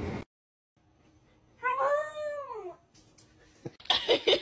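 A pet's single drawn-out call, about a second long, rising and then falling in pitch, after a short gap of silence.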